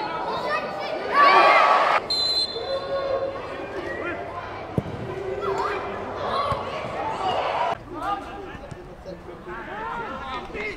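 Football match sound: players calling and shouting on the pitch, loudest in a shout about a second in, with a single sharp thud of a ball being kicked near the middle.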